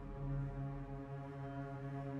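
Film score music: a low, held, droning chord that swells slightly and sits steady, dark and foghorn-like.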